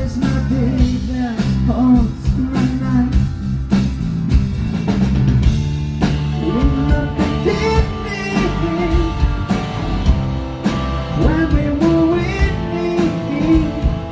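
A rock band playing live: a male lead vocal sung over electric guitar, bass guitar and drums.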